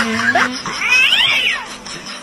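Domestic cat yowling: a drawn-out, wavering call fades out about half a second in, followed by a higher, rising-and-falling meow about a second in.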